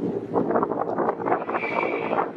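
Wind buffeting a phone microphone on the deck of a moving boat, a loud rushing noise that rises and falls, with the boat's motor underneath. A brief high-pitched tone sounds near the end.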